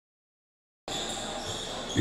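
Silence for almost a second, then the gym sound cuts in: a basketball bouncing on a wooden court.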